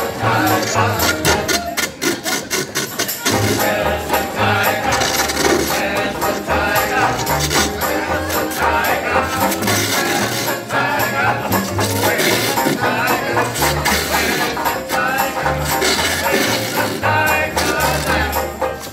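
A traditional jazz band playing an up-tempo number: double bass walking steadily underneath, banjo, clarinet and trumpet on top, with a shaken rattle-like hand percussion part clicking along.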